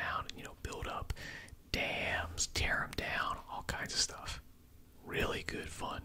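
A man whispering close to the microphone, with a few small sharp clicks between words.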